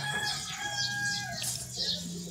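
Birds chirping in short, repeated high notes, with a longer held call through the middle, over a steady low hum.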